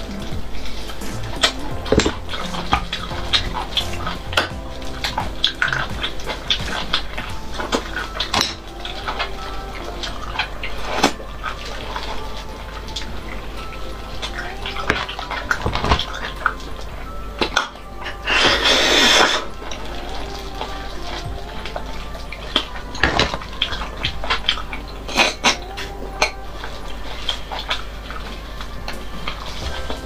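Close-miked eating sounds: wet sucking and slurping of marrow out of cut marrow bones, with many small clicks of bone and mouth noises, and one long, loud slurp about nineteen seconds in. Background music runs underneath.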